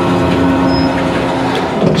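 Electric winch on a truck-mounted wrecker boom running with a steady whine as it moves the sling on its cable, then stopping shortly before the end.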